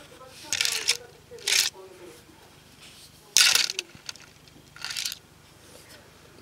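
Handling noise from the beaded tree's plaster-coated stand being moved about and set down on a cloth: four short bursts of rustling and scraping, the third the loudest.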